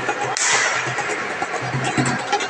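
Noise of an outdoor evening gathering with music playing. A sudden hissing rush starts about a third of a second in and fades away over about a second.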